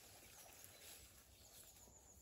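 Near silence, with a few faint, short bird chirps.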